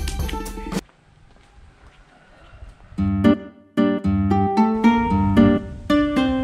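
Background music: one track cuts off about a second in, and after a short lull a plucked guitar tune begins, picking out single notes.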